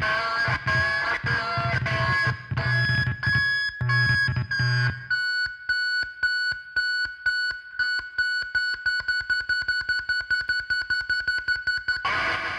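Noise-rock band recording: guitar, bass and keyboards playing together, then about five seconds in the bass and full band drop away, leaving a single held high tone chopped into rapid, even pulses.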